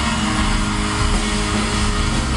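Live country band playing an instrumental passage with guitar to the fore, heard through an arena PA from far back in the stands, without vocals.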